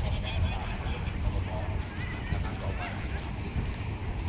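Many men's voices talking and calling out over one another, none clear, over a low steady rumble.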